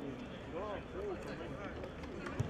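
Men's shouts from players during a football match, two short called-out sounds about half a second and a second in, over steady outdoor background noise.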